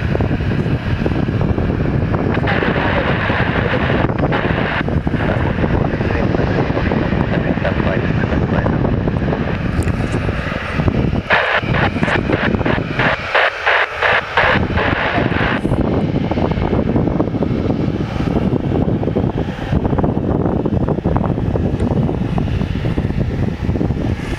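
Boeing 737 jet engines running at taxi power as the airliner rolls past, heard through heavy wind buffeting on the microphone.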